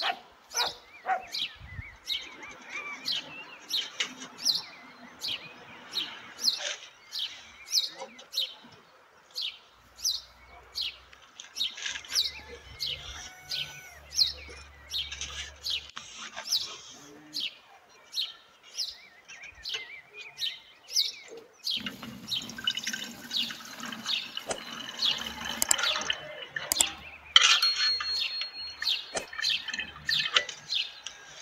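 Small birds chirping over and over, short sharp chirps about twice a second. Denser clatter of handling a metal pot and glass jar joins them in the last several seconds.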